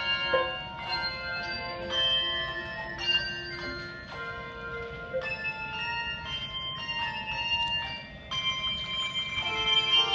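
Handbell choir playing a piece: chords of ringing handbell tones, a new set of notes struck roughly every second and left to sustain.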